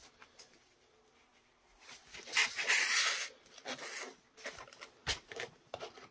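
A hobby knife cutting through painted terrain board: one scraping cut lasting about a second, starting about two seconds in, followed by several light scrapes and taps as the board is handled.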